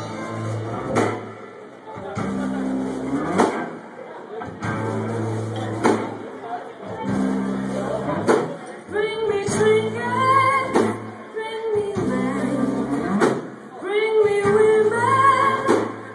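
A live funk/soul band playing, with electric guitars, bass, drums and horns, recorded on a phone in a small club; the drum hits come about every two and a half seconds. A woman's lead vocal comes in about nine seconds in.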